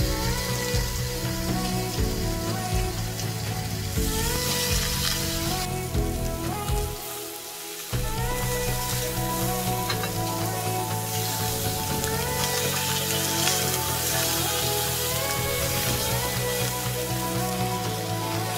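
Marinated lamb shoulder chops sizzling in a hot cast-iron grill pan, with background music over it.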